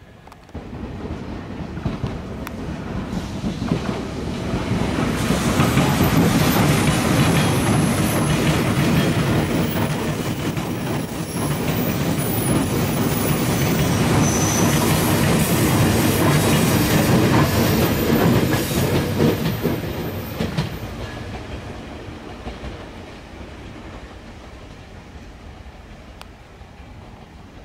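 A JR Kyushu 883 series 'Sonic' electric express train running past close by: wheels clattering over rail joints with a faint high squeal. The sound builds from about half a second in, is loudest through the middle, and fades away over the last several seconds.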